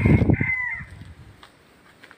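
A bird's call: one long, held call that bends in pitch at its end and stops about a second in, over a low noise that fades out about a second and a half in.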